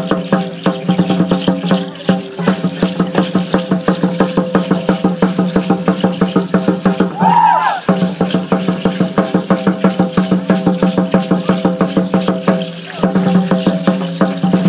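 Fast, steady drumbeat with rattles, the music for a ceremonial feathered-headdress dance. A brief rising-and-falling call or whistle sounds about seven seconds in.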